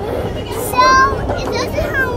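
Children's voices calling out on a moving ride, with one loud, high-pitched child's call about a second in, over a steady low rumble.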